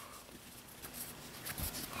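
Faint rustling of a microfiber cleaning cloth being handled and unfolded, with a soft low thump near the end.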